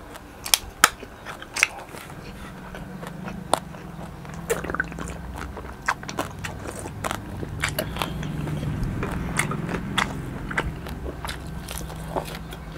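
A juice can's pull-tab cracking open with a few sharp clicks in the first two seconds, then close-miked gulping and swallowing as the juice is drunk from the can.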